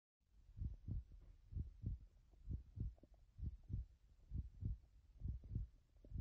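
Heartbeat sound effect: a steady run of paired low thumps, lub-dub, about one pair a second.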